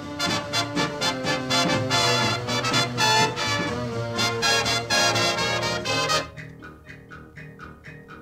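Background music: a swing-style tune with brass that drops at about six seconds into a softer passage of evenly spaced plucked notes.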